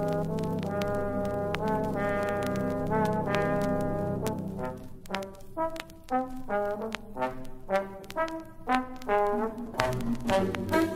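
Solo trombone playing a melody over a sustained concert-band chord. About halfway through, the band's low chord drops away and the trombone carries on in short, separated notes. Light pops and clicks from a vinyl record's surface run through it.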